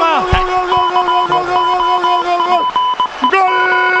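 A radio football commentator's long, drawn-out goal cry, held for over two seconds, dropping away, then taken up again near the end. A rapid, steady electronic beeping sounds underneath.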